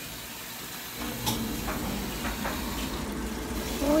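Washing machine drawing in water at the start of its wash cycle: a steady rush of inflow that starts about a second in, with a few light knocks.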